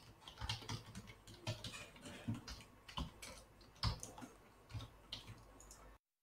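Computer keyboard typing: quiet, irregular key presses, with a couple of sharper keystrokes about three and four seconds in.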